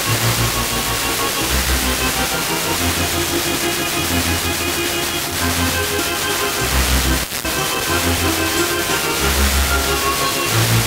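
Music from a distant FM broadcast on 94.50 MHz, played through a Blaupunkt car radio and half buried in steady hiss and static: the sign of a weak signal arriving by tropospheric scatter. The signal drops out briefly about seven seconds in.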